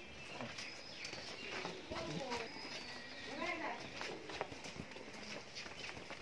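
Friesian dairy cow stepping on the hard yard floor: a few scattered hoof knocks, with faint voices in the background.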